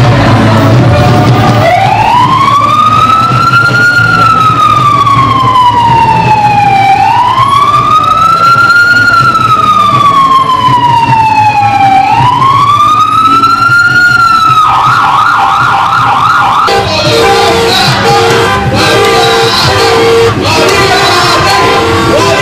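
An emergency vehicle siren in a slow wail, rising and falling three times, then switching briefly to a fast yelp. Music takes over for the last few seconds.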